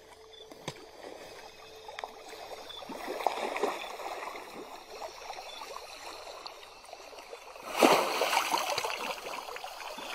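Swimming pool water lapping and sloshing softly around a swimmer, with a louder surge of water about eight seconds in.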